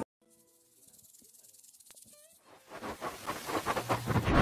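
Title-sting sound effect: after a near-silent moment, a faint hiss with a few thin tones starts. About two and a half seconds in, a fast pulsing swell begins and grows steadily louder.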